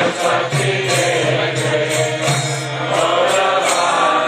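Devotional kirtan: voices chanting a mantra in melody, over a steady percussion beat.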